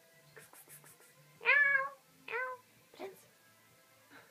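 A cat meowing three times: one longer call about a second and a half in, then two shorter, quieter meows.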